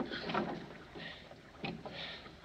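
Sea water sloshing and splashing around a wooden lifeboat, in a few irregular bursts.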